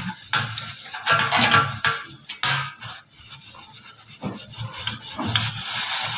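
Hand scrubbing a tarnished silver tray coated with cleaning paste, in irregular rubbing strokes, while polishing the tarnish off.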